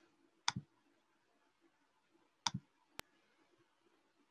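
Faint computer mouse clicks, each a quick press-and-release pair: two of them about two seconds apart, then a single sharp tick near the end.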